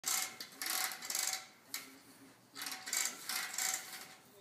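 Metal clicking and rattling of a calf puller being handled, in bursts: one long burst at the start, a short one near two seconds, and another long one in the second half.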